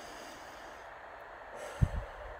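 A woman taking a slow, deep breath in. Near the end comes a short, low thump, the loudest moment, as she starts to blow the air out through pursed lips.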